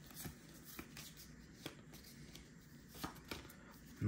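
Faint handling of a stack of Pokémon trading cards: cards sliding against each other as they are moved through by hand, with a few soft flicks and clicks scattered through.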